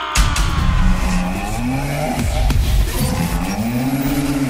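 A DJ transition effect in a live aparelhagem (Pará sound-system) set: heavy bass drops in just after the start, and deep tones glide up and back down twice.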